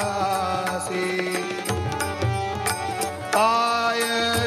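A man singing a devotional song into a microphone, with steady instrumental accompaniment and regular percussion strokes. He swells into a louder, held note about three seconds in.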